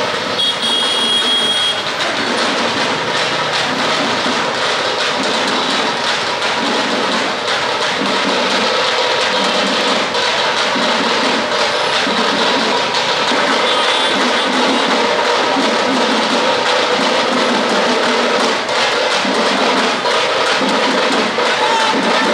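Loud, dense din of a street procession: music with a steady, regular beat over crowd noise.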